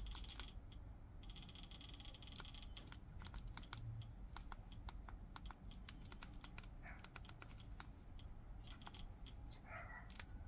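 Faint, irregular clicking of a TV remote's buttons being pressed while a menu is scrolled, several clicks a second at times, over a low steady hum.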